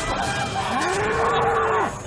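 A moo from a homemade mechanical bull: one long call that rises and then holds, starting about two-thirds of a second in.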